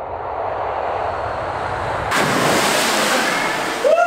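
A person jumps from a rock ledge into a cave pool: about two seconds in, a loud splash as he hits the water, followed by the water churning and washing for nearly two seconds. A short rising shout comes near the end.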